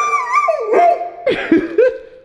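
Dog howling on the command to speak: one long, wavering howl in the first half second or so, then several short rising-and-falling whines and yips.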